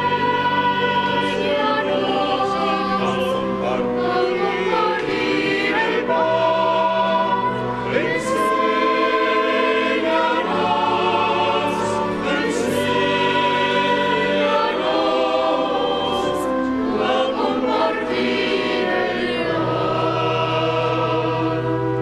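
Church choir singing a hymn during communion at Mass, in long held notes over sustained low tones.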